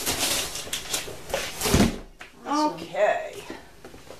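A cardboard box being handled and set down on a hard floor, with rustling, then a thud a little under two seconds in.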